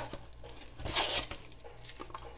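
Plastic wrapping and styrofoam packaging being handled, a crinkling, tearing rustle that is loudest about a second in.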